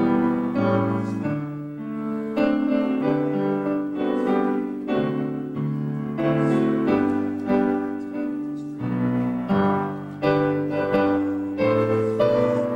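Solo piano playing a patriotic song by ear, several notes struck together in chords under the melody.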